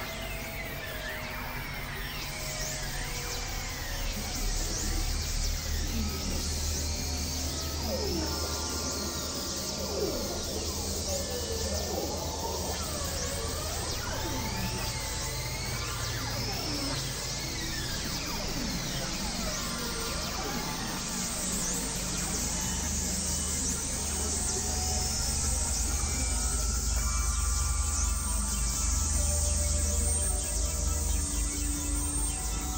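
Experimental electronic synthesizer music: a low steady drone under many overlapping tones that swoop up and down in pitch, growing slightly louder toward the end.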